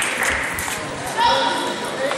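Table tennis ball clicking sharply off bats and table in a quick rally, then a short high-pitched voice call a little after a second in, over steady chatter in a large sports hall.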